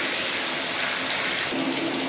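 Handheld shower head running, a steady spray of water hissing into a bathtub.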